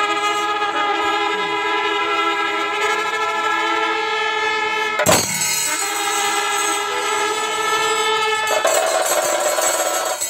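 Kombu horns of a pandi melam ensemble sounding long, held notes that overlap one another, the notes shifting a little near the end. One sharp crack cuts through about five seconds in.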